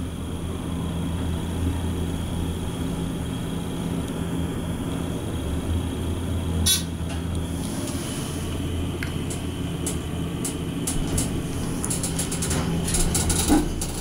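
Dover hydraulic elevator car descending with a steady low hum. There is a single clunk about seven seconds in, then a run of clicks near the end as the car stops and the doors open.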